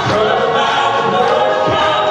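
A southern gospel group of men and women singing together in harmony, steady and loud.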